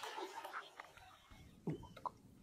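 Water splashing and settling after a traíra strikes a surface lure at the edge of flooded brush, dying away within the first second. A soft knock comes near the end.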